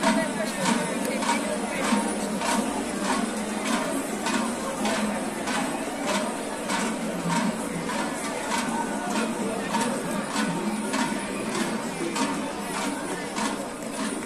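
A steady rhythmic percussive beat, about two to three sharp strikes a second, from festival marchers, over the murmur of a large crowd.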